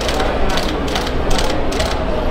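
A rapid, uneven run of camera shutter clicks, about four a second, over the chatter of a crowd.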